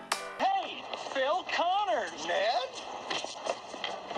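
A voice swooping widely up and down in pitch, like an exaggerated drawn-out call, from about half a second in to near three seconds, over background noise. Electronic music cuts off just before it starts.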